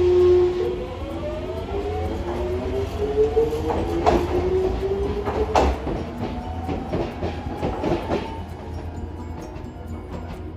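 Hiroshima Electric Railway 3800-series articulated tram pulling away from a stop. A steady electric motor tone turns into several whines rising in pitch as it accelerates, over a low rumble, with a few sharp clacks of wheels over the rails as it draws off.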